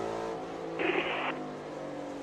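NASCAR Cup race car's V8 engine heard from the in-car camera, running at a steady pitch, with a short hiss about a second in.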